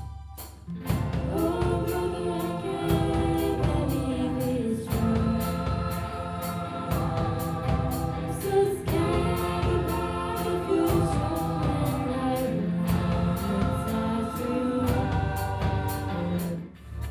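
Choir and a lead singer performing a pop song with a rock band of electric guitars and drums, over a steady drumbeat; the full band and choir come in about a second in.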